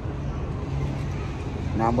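City street traffic noise: a steady low rumble with a constant hum underneath.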